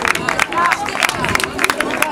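Several voices of players and spectators shouting and calling across a football pitch, mixed with a string of short, sharp knocks.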